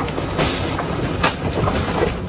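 JCB backhoe loader's engine running with clanks and crashes of breaking concrete and debris as its bucket demolishes a house, with a few sharp knocks about half a second in and again past the one-second mark.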